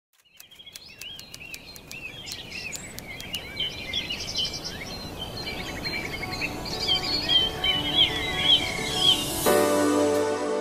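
Birds chirping in many short, quick calls over a low background rumble, fading in from silence at the start and growing louder. About half a second before the end, music with sustained tones comes in suddenly.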